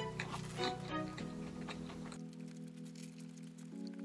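Soft background music of sustained, slowly changing notes. Over it, in the first second or so, a few short crisp clicks of toast being bitten and chewed.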